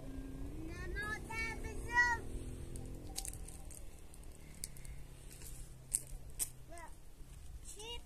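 A young child's high voice, calling out in short bursts of speech about a second in and again near the end. A few faint clicks fall in between.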